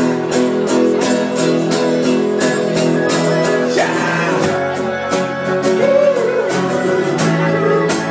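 Live band playing: strummed acoustic guitars and an electric guitar over a steady beat, with a man singing over it from about halfway through.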